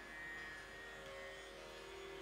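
Tanpura drone, faint and steady: several sustained string tones ringing on together, with another tone coming in about a second in.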